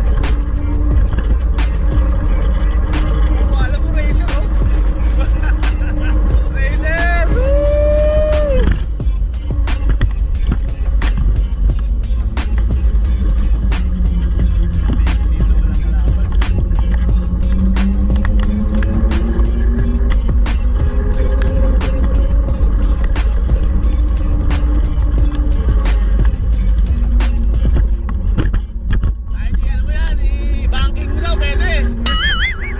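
Steady low wind rumble and road noise from riding an electric kick scooter, under music with a sliding vocal-like melody.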